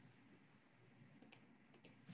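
Near silence, with a few faint, short clicks about a second in and again near the end.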